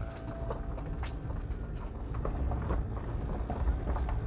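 A Mitsubishi L200 pickup converted to electric drive, rolling slowly over rough ground and heard from inside the cab. There is a low rumble with scattered light knocks and clunks, and no engine running.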